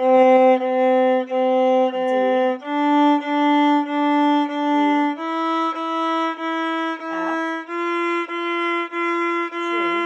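Violin playing a C major scale slowly upward, four even bow strokes on each note: C on the G string, then D, E and F, each step up about every two and a half seconds.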